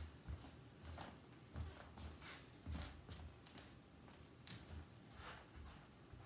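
Faint footsteps of sneakers on a wood floor and rug, a soft thump about every half second.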